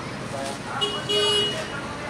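Vehicle horn honking: a short toot, then a longer one of about half a second.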